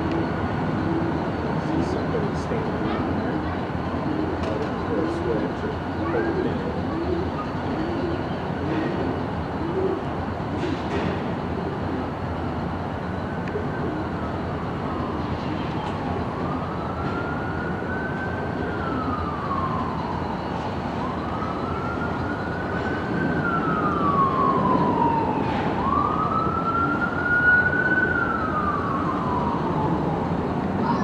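An emergency vehicle's siren wailing, slowly rising and falling about every four to five seconds; it comes in faintly about halfway through and grows louder toward the end. Under it runs the steady low rumble of idling diesel locomotives.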